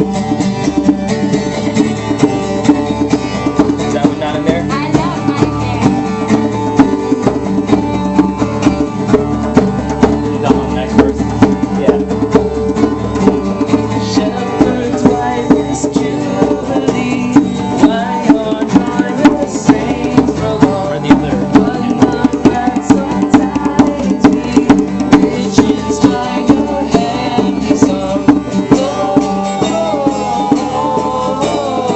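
A Christmas carol sung with an acoustic guitar strummed in a steady rhythm, with sharp accented strikes on the beat about twice a second.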